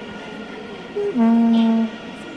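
A horn blown in the stadium crowd over a steady crowd background: a short higher note about a second in, then one long, loud low note that stops just before the end.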